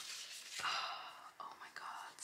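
A woman whispering softly, a hushed excited voice with no clear words.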